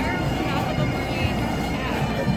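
Street crowd chatter over a steady low rumble, with scattered voices rising and falling.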